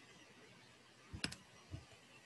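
Faint, light clicks: a quick double click a little after a second in, then a softer single click about half a second later.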